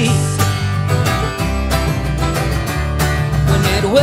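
A live bluegrass band playing an instrumental passage, with acoustic guitar and banjo picking over a steady bass line.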